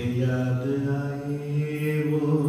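A man's voice intoning guided meditation commentary slowly in a chant-like way, each sound drawn out long at a steady pitch.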